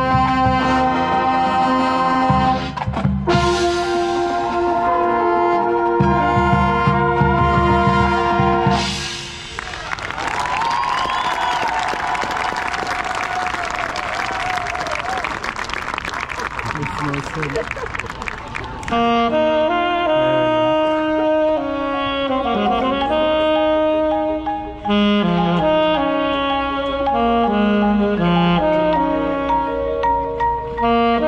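Marching band playing: held brass chords over a low drum pulse, then a dense stretch of loud noise from about nine to nineteen seconds in, then the winds come back with a stepping melody.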